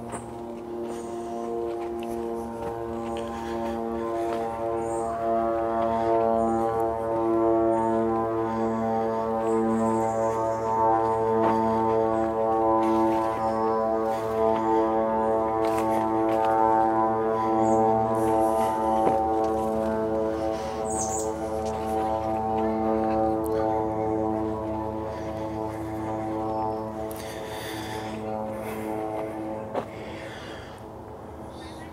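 Steady, low droning hum of a large distant engine holding one pitch, growing louder over the first several seconds and fading toward the end. Footsteps on a dirt trail run along with it.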